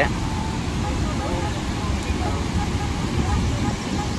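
Steady rushing roar of the Niagara River rapids, with faint voices of people in the background.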